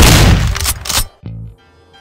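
Sudden loud burst of gunfire sound effect with several sharp cracks, lasting about a second, then a short low tone.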